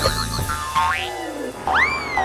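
Cartoon sound effects in a break of a children's song: a warbling whistle tone, a quick upward sweep about a second in, then a boing-like swoop that shoots up and slowly falls near the end, with the drumbeat paused.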